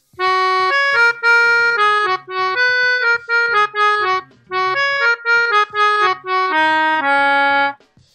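Melodica playing a short tune of separate reedy notes in two similar phrases, the second ending on a longer held low note.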